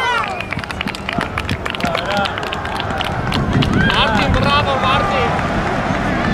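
Young footballers shouting and calling to each other, high-pitched voices in short bursts, over a rapid scatter of clicks and thuds through the first half.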